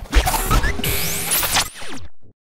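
A short transition sting of music and sound effects: a deep hit at the start, then a dense glitchy wash with quick rising sweeps through the middle.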